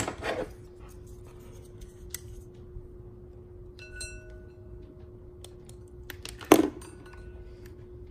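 Hands handling a small plastic 12 V solenoid valve and its push-fit tubing: scattered small clicks, a short ringing glass-like clink about four seconds in, and one sharp knock about six and a half seconds in, the loudest sound, over a faint steady hum.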